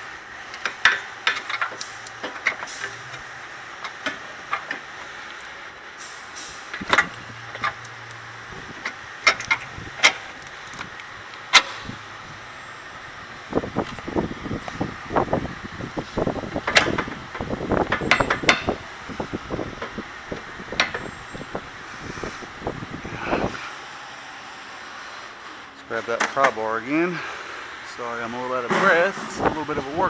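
Sharp metallic knocks and clinks of a new lower control arm and its bolt being worked into the frame mount of a 2014 Dodge Charger. Scattered single knocks come first, then a busier stretch of clatter in the middle, then a man's voice near the end.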